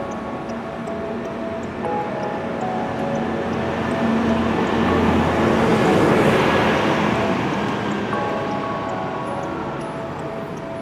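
A bus driving past, its noise building to a peak about six seconds in and then fading, with background music playing over it.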